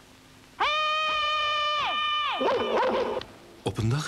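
A boy's loud, high-pitched shouted call, held on one pitch for over a second, then stepping down and breaking up into a rougher cry. A man's narration begins near the end.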